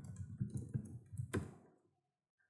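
Typing on a computer keyboard: a quick, irregular run of key clicks that stops about a second and a half in.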